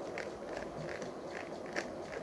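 A 3×3 Rubik's cube being turned quickly by hand: a run of light plastic clicks and scrapes, two or three a second, with one sharper click near the end.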